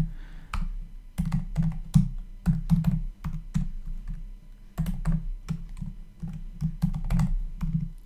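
Typing on a computer keyboard: a fast run of key clicks, with a short lull a little past the middle before the typing picks up again.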